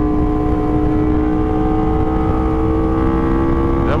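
Aprilia RSV4 Factory's 1,100 cc V4 engine through an SC Project exhaust, pulling steadily under acceleration at highway speed, its pitch rising slowly without a gear change.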